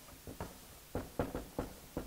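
Marker pen writing on a flip-chart pad on an easel: a run of short taps and strokes against the paper, about eight of them, coming faster and louder after about a second.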